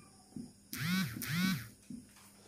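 Marker squeaking on a whiteboard while writing: two separate squeaks, each rising and then falling in pitch, with light taps of the marker tip before and after.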